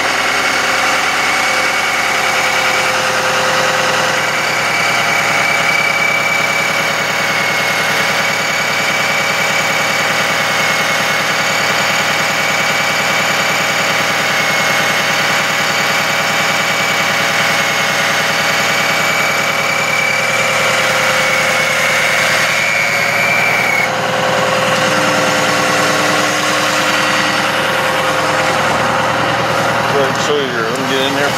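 Ford F-550 truck engine running steadily while the chip dump body is raised on its hydraulic hoist, with a steady high whine over the engine. The whine stops about 24 seconds in, and a lower hum follows briefly.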